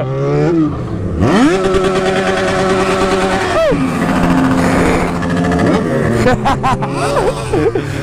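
Yamaha XJ6's 600 cc inline-four engine revved hard while riding: the pitch climbs steeply about a second in and holds at the rev limiter, which cuts in and out rapidly for about two seconds, then drops away sharply and runs lower, with a few short blips near the end.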